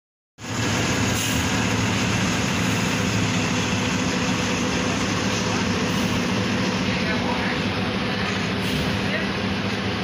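Diesel engine of a Volvo coach with a Marcopolo body, running steadily at low revs as the bus moves off slowly: a loud, even low hum.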